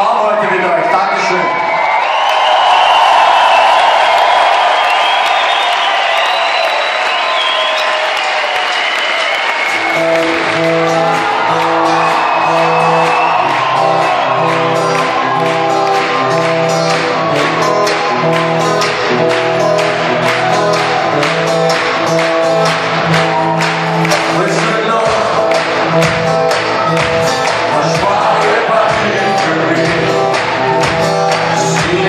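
Concert crowd cheering and shouting. About ten seconds in, a live band starts a song with held chords over a bass line, and drums join a couple of seconds later and build up.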